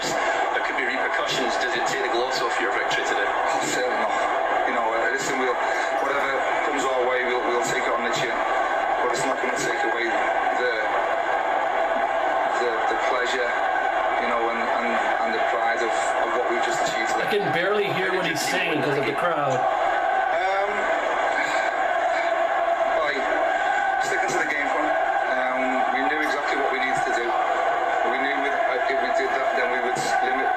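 A man speaking in a televised post-match interview, heard over a steady background din.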